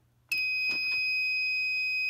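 Fire alarm control panel's built-in sounder giving one steady, high-pitched beep that lasts about two seconds and cuts off sharply, as the panel is reset after a walk test.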